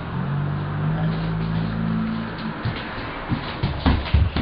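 A steady low hum that stops a little past halfway, followed by a run of uneven thumps: a toddler's footsteps on a wooden floor, the loudest near the end.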